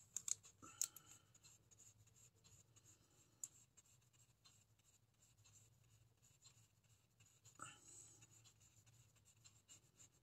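Near silence, with a few faint taps and light brushing as a small flat paintbrush works water over oil pastel on sketchbook paper.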